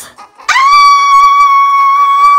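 A child's voice screaming one long, very high-pitched held 'ahh', starting about half a second in.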